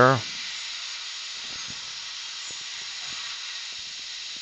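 Steady hiss of compressed air from a dental air syringe, with the suction running, drying the tooth so the depth of the decay can be judged. A few faint clicks of instruments are heard.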